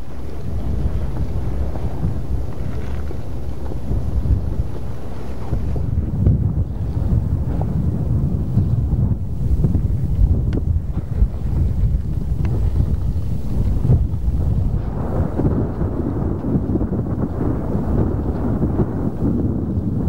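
Wind buffeting a microphone: a steady, low rumbling noise with a few faint clicks, growing fuller about three-quarters of the way through.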